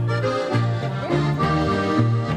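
Accordion-led music from a Slovenian folk ensemble, played for dancing, with a bass line that moves note by note under the melody.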